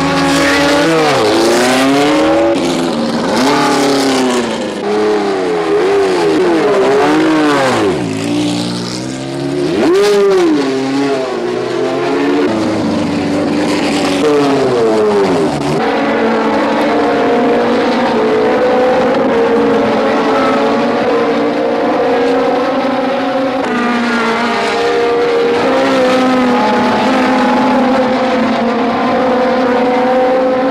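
1970s Formula One racing engines at speed. In the first half several cars go by, their high engine notes rising and falling. From about halfway one engine note holds steady, with a small shift in pitch a few seconds later.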